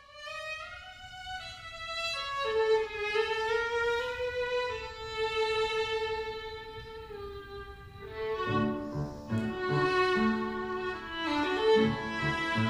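Violin playing a slow melody of long held notes. Grand piano accompaniment joins about two-thirds of the way in.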